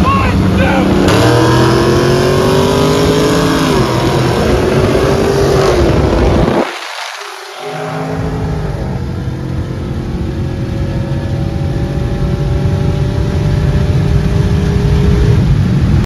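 Supercharged V8 muscle cars accelerating hard at wide-open throttle in a roll race: the engine pitch climbs through the gears, dropping at each upshift. After a brief cut, one car keeps pulling in a high gear with a steady, slowly rising engine note.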